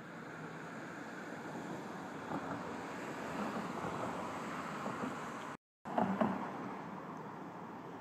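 Steady outdoor street ambience, an even wash of distant traffic noise that swells slightly. It drops out for a moment just before six seconds in, then a few short knocks follow.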